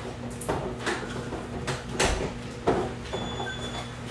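A few sharp knocks and clatters of kitchen cupboards and cookware being handled while the steamer tray is looked for, the loudest about two seconds in, over a low steady hum.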